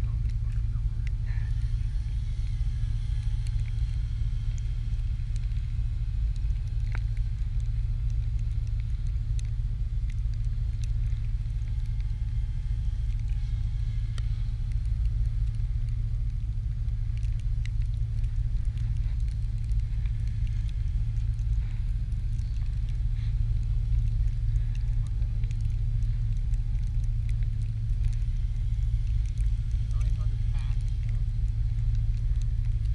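A steady low rumble of wind on the microphone throughout. Above it is a faint, thin, steady whine from a small electric RC helicopter flying at a distance.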